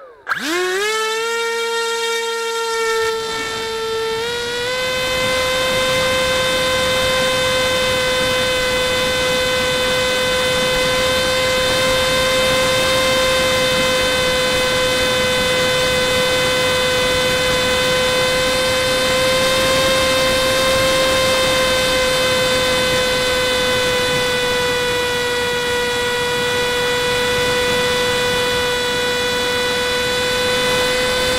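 Brushless 2204 motor turning a Gemfan 6045 propeller on a small foam-board flying wing, heard from the wing's own onboard camera: a whine that climbs quickly as the motor spools up, steps up again about four seconds in, then holds a steady high pitch at flying throttle. A rush of wind noise runs underneath.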